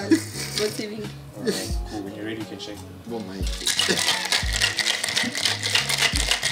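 Ice rattling in a stainless-steel cocktail shaker being shaken fast and steadily, starting a little past halfway through, over background music.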